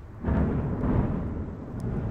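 Deep, thunder-like rumbling sound effect that swells up about a quarter second in and then slowly eases off.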